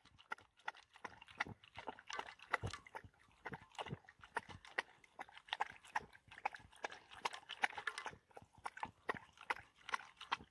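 Dog eating kibble from a stainless steel bowl: quiet, irregular crunches and clicks, a few each second.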